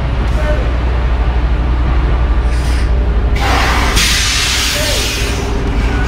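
Semi-truck diesel engine idling with a steady low rumble. A loud hiss of escaping air starts a little over three seconds in and lasts about two seconds, typical of a truck's air brakes venting.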